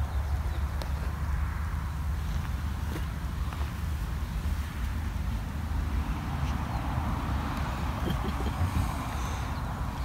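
Steady low rumble of distant highway traffic, with a few faint clicks.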